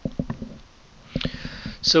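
Computer keyboard keystrokes: a quick run of soft clicks, then a few more about a second in.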